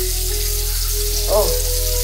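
Tap water running steadily into a bathroom sink.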